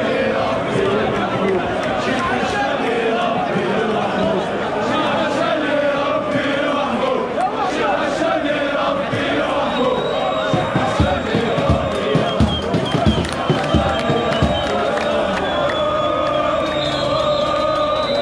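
Large crowd of street protesters chanting together with many overlapping voices. From about halfway through, a steady beat of low thumps joins the chant.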